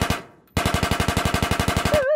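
Rapid automatic machine-gun fire, a game sound effect. A burst fades out just after the start, then after a brief pause a second, longer burst of evenly spaced shots runs on.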